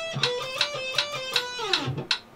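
Electric guitar playing a short run of fretted notes stepping up and down, in time with a metronome clicking at 160 beats a minute. Near the end the note slides down in pitch.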